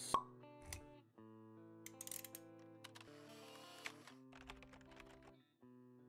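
Quiet intro jingle of soft held musical notes with a few light clicks, opening with a single sharp pop.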